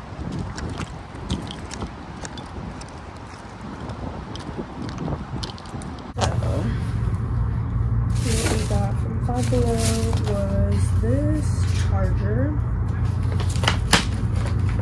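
Outdoor ambience with traffic and small handling noises while walking. After a sudden change about six seconds in, a steady low hum starts, with a wavering voice-like melody over it and a few sharp rustles of shopping packaging.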